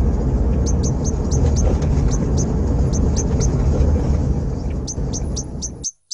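A small Hyundai i10 hatchback approaching slowly, its engine and tyres giving a steady low rumble, while a bird chirps over it in short, high, repeated notes. The sound cuts off suddenly near the end.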